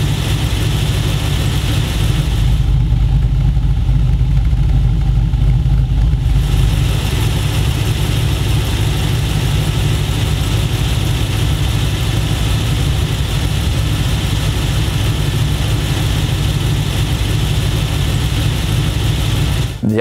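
GM LS V8 in a Holden VE Commodore idling with a VCM E5 camshaft, a cam described as having a very mellow, almost undetectable idle. The sound is steady throughout, turning deeper and slightly louder for a few seconds near the start.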